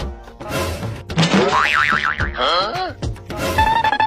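Background music with cartoon-style comic sound effects: a warbling, wobbling tone in the middle, then a tone that glides sharply upward near the end.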